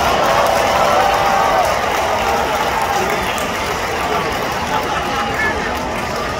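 Ballpark crowd noise: a steady hubbub of many voices in the stands as the batter comes to the plate.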